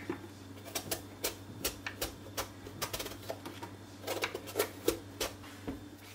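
Kitchen knife peeling strips of skin off a hand-held eggplant: a run of crisp, irregular snicks, a few a second, loudest about four to five seconds in. A faint steady low hum lies underneath.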